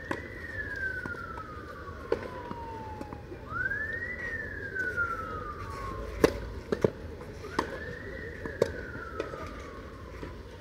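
An emergency vehicle's siren wailing, each cycle rising quickly and then falling slowly, repeating about every four seconds. Sharp tennis racket-on-ball hits and ball bounces on the clay cut through it, loudest about six seconds in.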